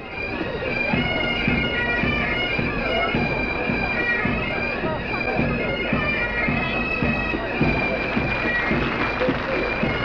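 Great Highland bagpipes playing a tune: the chanter's melody moves from note to note over the steady drones, without a break.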